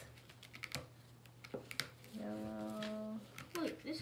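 Light clicks and taps of frozen ice cubes against a plastic ice cube tray and the tabletop, several in the first two seconds. Then a voice holds one steady note for about a second.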